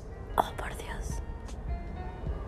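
A woman's sharp breathy gasp followed by whispering, over faint background music.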